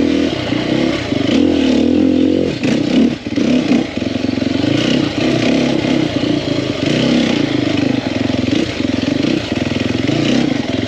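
2021 Sherco 300 SEF Factory's single-cylinder four-stroke engine running under the rider's throttle, its pitch rising and falling as it is revved and backed off, with a brief dip around three seconds in.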